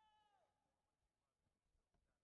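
Near silence: faint room tone, with one brief, faint high-pitched squeal at the start that falls in pitch as it ends.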